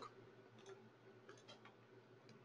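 Near silence with a few faint, short computer mouse clicks, about four spread across two seconds.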